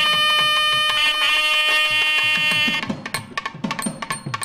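South Indian temple music: a nadaswaram holds one long steady note, then stops about three seconds in and a tavil drum plays quick strokes.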